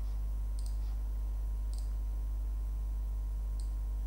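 Computer mouse clicking three times at uneven intervals while a software command is picked, over a steady low hum.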